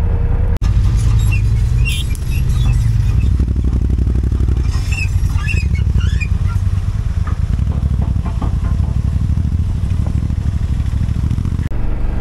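BMW F 850 GS Adventure's parallel-twin engine running steadily while the bike rides over a gravel road, with a few scattered higher clinks and rattles.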